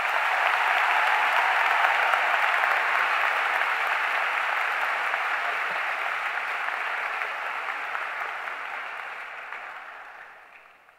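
Large audience applauding, a dense steady clapping that builds at the start and slowly dies away toward the end.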